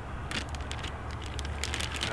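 Plastic bag crinkling in a few short crackly bursts as bait is shaken out of it into a dog-proof raccoon trap, over a low steady rumble.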